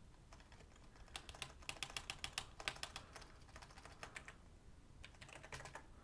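Computer keyboard typing, faint: quick runs of keystrokes from about one to three seconds in, a few more keys after that, and another quick run near the end.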